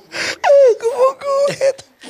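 A man's loud, high, wailing laugh: one cry that slides down in pitch and then breaks into a few short pulsing yelps.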